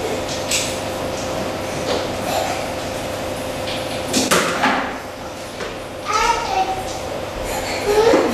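Room noise with faint voices, and one brief scrape or knock about four seconds in as a string mop head shoves a plastic basin across the floor. A voice speaks briefly about six seconds in.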